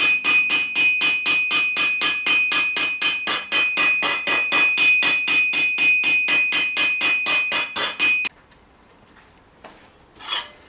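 A hammer planishing a steel vambrace on the flat face of an anvil, smoothing the metal. It goes as a rapid, even run of light blows, about five a second, over a steady high ringing tone, and the hammering stops about eight seconds in.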